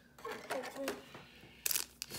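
Clear plastic card wrapping crinkling once, briefly and sharply, near the end, after a few murmured words.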